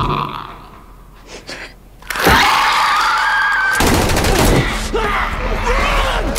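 Horror TV soundtrack: after a quieter stretch, a sudden loud shriek starts about two seconds in, then several seconds of loud, noisy struggle with cries.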